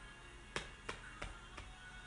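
Four light taps, evenly spaced about three a second, over quiet room tone.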